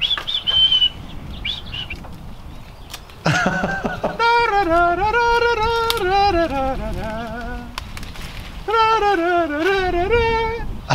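A few short bird chirps in the first two seconds, then a person laughing from about three seconds in, breaking into long, wavering high vocal notes.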